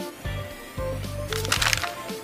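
Baking soda powder poured from its cardboard box into a plastic tub, a brief noisy hiss in the second half, over background music.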